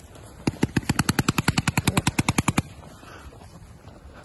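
Paintball marker firing a rapid burst of about twenty shots at roughly ten a second, starting about half a second in and stopping after about two seconds.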